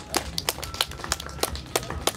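Scattered hand claps from a small audience after a song ends, irregular and sparse, over a low steady amplifier hum.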